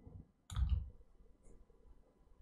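A single short click with a soft low thump, about half a second in, then near silence.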